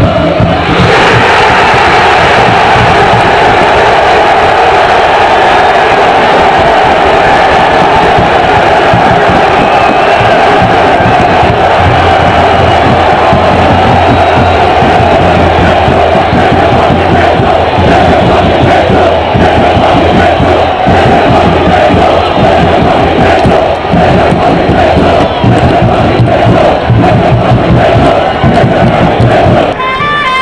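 A large crowd of football supporters chanting together, loud and continuous without a break.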